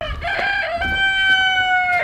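A young rooster crowing once: a short broken opening, then one long held note that sags slightly in pitch toward the end.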